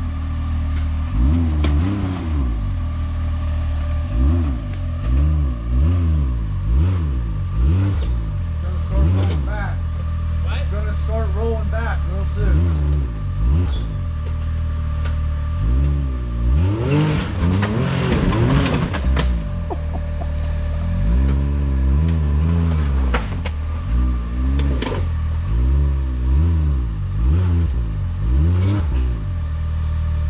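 Can-Am Maverick X3 side-by-side engine revved in short repeated bursts, each rising and falling in pitch about every one to two seconds, as the machine tries to climb over a rock ledge, with a longer, harder rev a little past halfway and scattered knocks.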